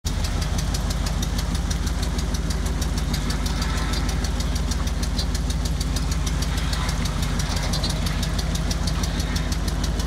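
Mud truck's engine running steadily at low revs, with a rapid, even pulse.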